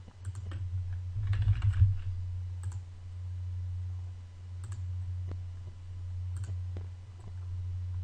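A short run of computer keyboard typing about a second in, then separate mouse clicks spaced a second or two apart, over a steady low hum.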